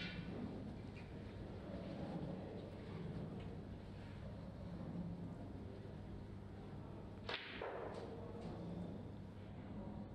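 A pool cue tip strikes the cue ball once about seven seconds in, a single sharp click, as a one-cushion escape from a snooker is played. A fainter ball click comes right at the start, over a steady low hum in the hall.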